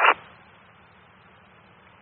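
Fire-department radio scanner: a transmission cuts off just after the start, then a faint steady hiss from the open radio channel with no voice on it.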